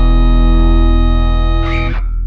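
The final held chord of a metalcore song: distorted electric guitar and bass sustained steadily. A short noisy sweep comes near the end.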